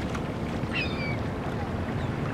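Small waves lapping gently onto a sandy beach, a steady low wash of water at the shoreline. About three-quarters of a second in, a brief high-pitched call sounds faintly over it.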